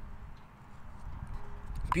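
Low wind rumble on the microphone and a faint steady hum, with a few quiet sips from a paper cup.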